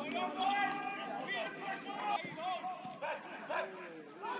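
Several footballers shouting and calling to each other during play, their voices overlapping in short, rising and falling calls.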